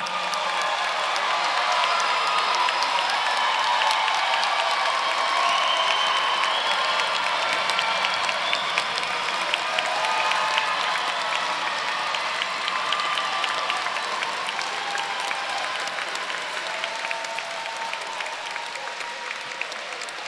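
Large crowd of graduates and audience applauding and cheering, with whoops and shouts rising over the clapping. It fades slowly over the second half.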